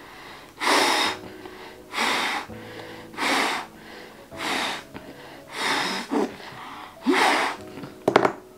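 Six hard puffs of breath blown through a cloth face mask with an exhalation valve at a lighter flame, one about every second and a quarter, over faint background music.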